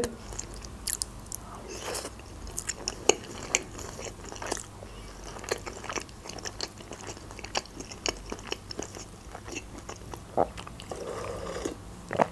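Close-miked eating: chewing a mouthful of beetroot vinegret salad with many small wet mouth clicks and crunches, then spoonfuls of chicken soup taken near the end.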